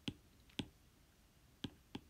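Faint stylus taps on a tablet screen while digits are handwritten: four short, sharp clicks at uneven intervals.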